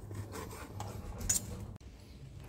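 Table knife sawing through a slice of cooked steak on a plastic cutting board: a few short, faint scraping strokes.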